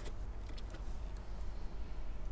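Faint clicks and rustling from hands handling a plastic wiring connector and its wires, over a low steady hum.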